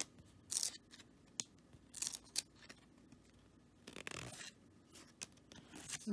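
Paper trading cards sliding and flicking against one another as they are flipped through by hand: a series of short, soft swishes, with a longer slide about four seconds in.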